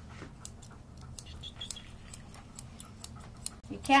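Straight grooming shears snipping through a standard poodle's coat in a steady rhythm, about three or four crisp cuts a second.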